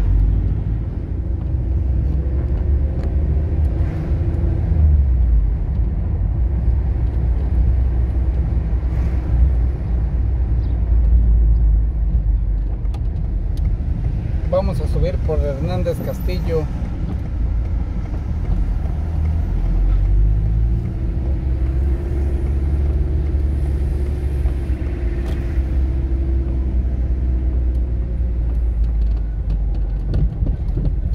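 A car driving through town streets: a steady low engine and road rumble throughout, with a brief pitched voice-like sound about halfway through.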